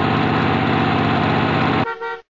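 Car engine running steadily and loudly, cutting off shortly before the end.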